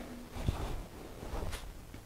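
Quiet handling sounds from hands working at an old tractor's distributor, with a soft knock about half a second in and a few faint ticks after.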